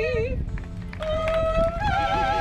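Solo voice singing in an operatic style. A held note with wide vibrato ends just after the start; after a short pause the next phrase begins about a second in, on steadier notes that step upward.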